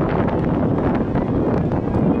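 Wind buffeting the camera's microphone: a steady, low rushing noise.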